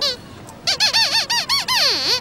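Sweep glove puppet's squeaker voice: a quick run of about eight high squeaks, each bending up and down in pitch like chattering speech, starting about half a second in. This is Sweep's squeaked 'speech', here asking to help fix the hole.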